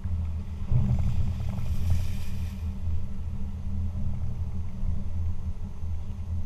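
Low, steady rumble of a car on the move, picked up by a camera mounted on its hood. A louder rushing hiss joins it for about two seconds, starting about a second in.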